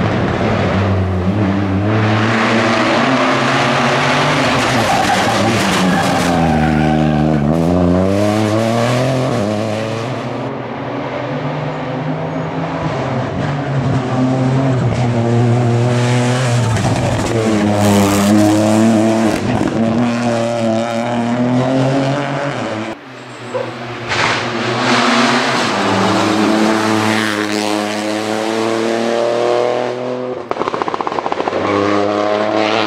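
Rally car engine revving hard through the gears as the car approaches and passes. Its pitch climbs and drops again and again with each shift and lift, and the sound cuts briefly about three-quarters of the way through.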